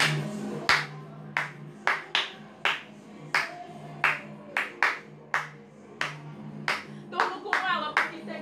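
A person clapping her hands in single, separate claps, about fifteen of them at roughly two a second, over a low steady hum; a singing voice comes in near the end.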